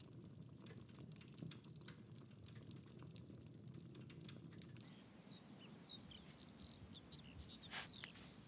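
Near silence: faint ambience with scattered light ticks, then faint high chirps in the second half and a brief rustle near the end.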